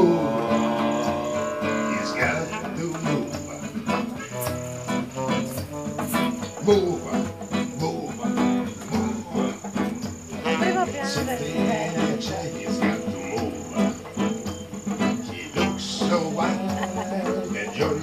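A live acoustic band playing an instrumental break: acoustic guitar and djembe with tenor saxophone and harmonica carrying melody lines, and no singing. A steady high insect trill sounds through it.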